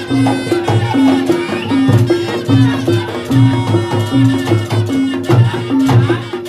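Reog gamelan music accompanying the dance: a steady repeating pattern of low pitched gong notes alternating with each other, over drumming and higher melodic lines.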